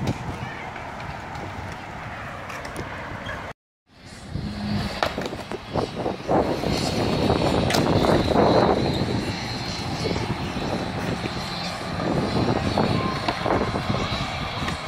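Skateboard wheels rolling on concrete, with several sharp clacks of boards. The sound cuts out briefly about three and a half seconds in, then comes back louder.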